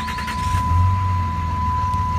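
A 5.9 L Cummins inline-six turbo diesel in a 2007 Dodge Ram 2500 starting: the starter finishes cranking and the engine catches about half a second in, flares briefly and settles into a steady idle. A steady high electronic tone sounds throughout.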